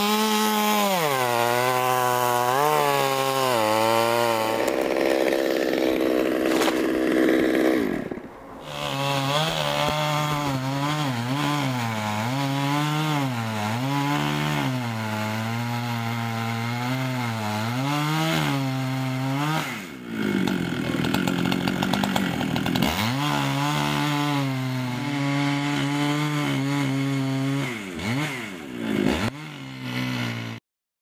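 Chainsaw cutting through maple wood, its engine note sagging under load and picking back up over and over as the chain bites and frees. Twice it holds a steadier, higher note for a few seconds, and it briefly drops off about a third of the way through.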